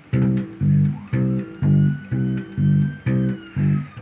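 Electric bass guitar playing a plain root-and-fifth bass line: single plucked notes, about two a second, alternating between the root and the fifth.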